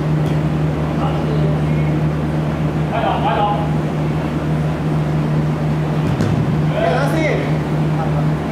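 Players' voices calling out on an indoor futsal court: one call about three seconds in and another about seven seconds in. A steady low hum runs underneath.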